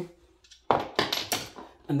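Two screwdrivers set down on a wooden floor, clattering in a few quick knocks about a second in.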